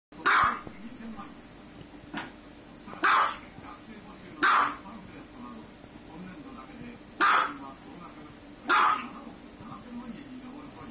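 A small dog barking: five sharp, loud barks a second or two apart, with a softer one in between.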